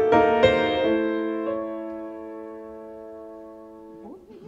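Piano accompaniment of a classical art song sounding alone: a chord at the start and another about a second in, held and slowly dying away.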